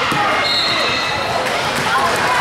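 A basketball dribbled on a hardwood gym floor, its bounces mixed with spectators' voices in a large, echoing gym.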